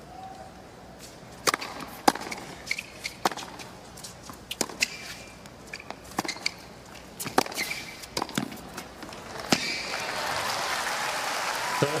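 Tennis rally on a hard court: sharp racket-on-ball hits and bounces about once a second, with short rubber shoe squeaks. After a last hit about nine and a half seconds in, the crowd starts applauding.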